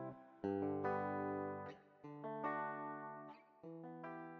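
Instrumental outro of a hip-hop beat: guitar chords struck about five times, each left to ring and fade before the next.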